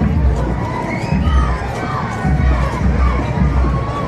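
Street crowd with children shouting and cheering: many short overlapping calls over a general hubbub, with heavy low rumbling in bursts underneath.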